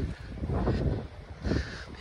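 Outdoor walking sounds: light wind buffeting the microphone, with a few faint, irregular footsteps on a grassy, stony lane.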